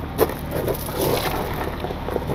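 A short metallic knock, then scraping, as a wrecker's fifth-wheel adapter is set under and onto a trailer's kingpin. A low steady engine hum runs underneath.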